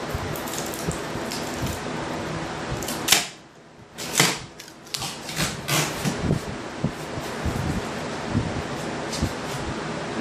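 A melamine-faced particleboard template being worked loose and lifted off a wooden table top: a sharp knock about three seconds in, then a cluster of smaller knocks and clicks, over a steady background noise.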